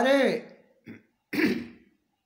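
A man's voice ends a word, then after a short pause he clears his throat once, a brief rough sound.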